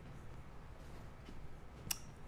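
Quiet room tone with a faint low hum, broken by a single sharp click near the end.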